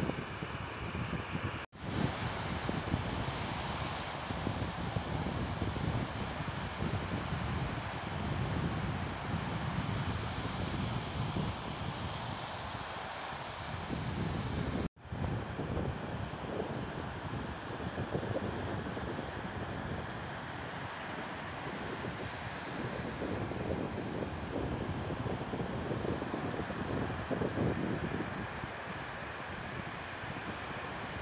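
Small waves breaking and washing up on a sandy beach, with wind rumbling on the microphone. The sound cuts out abruptly for an instant twice, about two seconds in and about halfway through.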